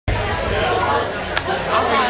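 Crowd chatter: several people talking at once in a bar, over a steady low hum, with one sharp click about two-thirds of the way through.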